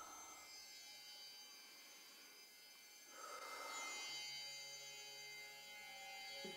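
Near silence, with faint held musical tones underneath and a soft swell about three seconds in.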